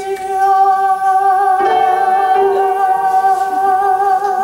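A male singer holding one long, high sung note over musical accompaniment, with more notes of the accompaniment joining about one and a half seconds in.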